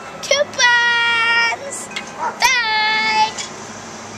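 A high voice singing two long held notes, jingle-style, the second starting with a quick slide down in pitch. A short sharp click comes just before the second note.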